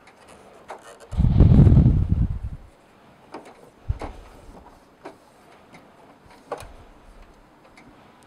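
Registration rollers and their gears inside a Brother laser printer being turned by hand: a low rattling run lasting about a second and a half shortly after the start, then scattered light plastic clicks and taps.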